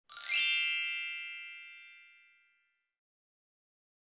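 Intro logo chime: a bright, many-toned ding with a quick upward sparkle at the start, ringing out and fading away over about two seconds.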